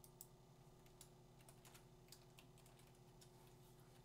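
Faint clicking of a computer keyboard and mouse: a quick scatter of key presses and mouse clicks, thickest in the second second, over a low steady hum.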